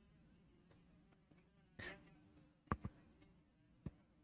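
Near silence, broken by a short soft brush about two seconds in and a few faint taps near the end, from a whiteboard being wiped clean.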